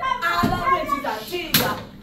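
Children's voices calling out, cut by two sharp knocks, about half a second and a second and a half in; the second knock is the louder.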